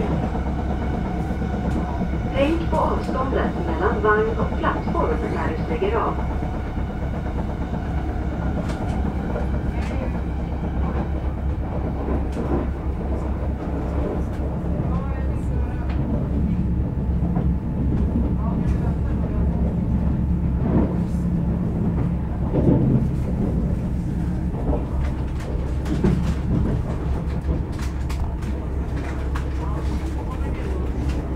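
Commuter train running along the line, heard from inside the carriage: a steady low rumble of the train in motion.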